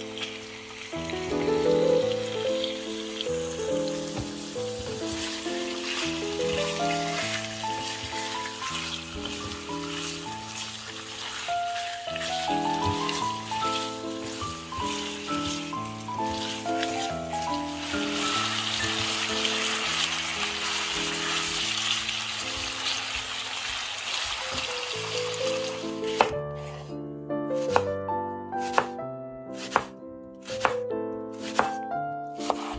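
Pork neck pieces sizzling as they fry in vegetable oil in a pan, the hiss heavier past the middle, under background music of picked notes. Near the end sharp knocks of a knife slicing an onion on a wooden board.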